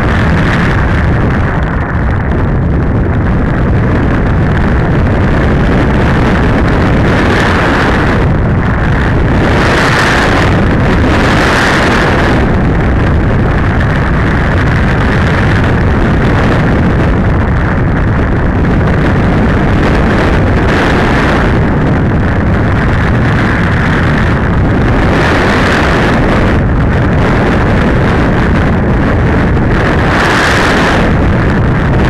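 Airflow rushing over the microphone of a camera mounted on a flying RC glider: loud, steady wind buffeting, with a few brief surges of brighter hiss.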